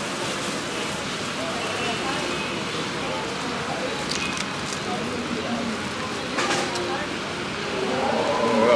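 Steady hiss of an outdoor street background with faint voices in it, and two short sharp clicks about four and six and a half seconds in.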